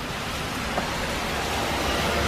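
Heavy rain pouring down, a steady hiss, with a low rumble building near the end.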